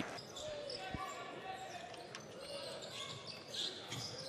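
Faint basketball arena sound: a low murmur of crowd voices in a large hall, with a basketball bouncing on the hardwood court, one clear bounce about a second in.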